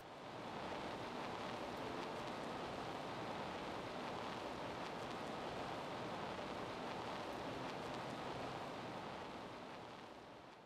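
A steady, even hiss like static or rain, with no pitch or rhythm. It starts suddenly and begins to fade near the end.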